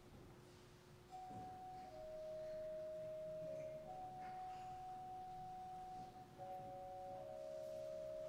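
Quiet organ music: a few soft, pure, flute-like notes held and overlapping one another, starting about a second in.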